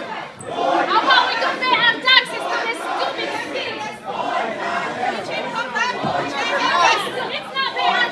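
A crowd of many people talking over one another, voices overlapping with no single speaker standing out.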